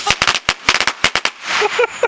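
Small firecrackers going off on the ground: about a dozen sharp, irregular pops in quick succession over the first second and a half. A person's voice follows near the end.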